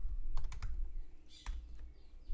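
Typing on a computer keyboard: a few separate keystroke clicks, irregularly spaced, as a word is typed.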